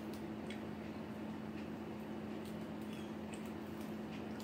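Quiet eating: a few faint, scattered clicks of chewing and lip smacking over a steady low hum.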